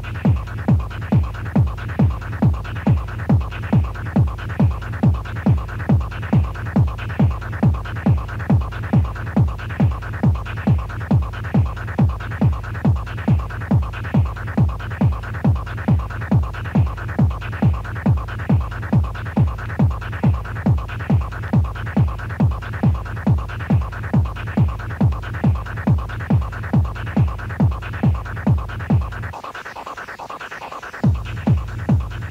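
Electronic dance music from a club DJ set: a steady four-on-the-floor kick drum at a little over two beats a second under a bass line and synth tones. Near the end the kick and bass drop out for a brief break.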